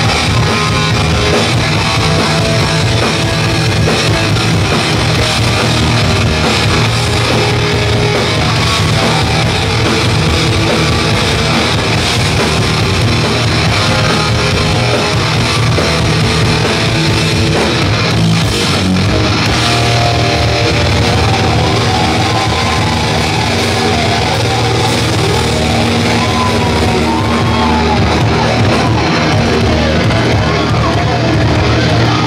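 Hardcore punk band playing a song live, loud and steady, with electric guitar to the fore.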